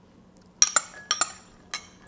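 Cutlery clinking against a dish as chopped tomato is added to the bowl: about five light, sharp clinks with a brief ring, some in quick pairs, starting about half a second in.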